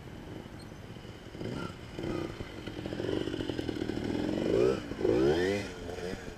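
Trials motorcycle engine revving in short bursts as it is ridden over rocks, growing louder as it comes closer. The revs rise sharply twice near the end.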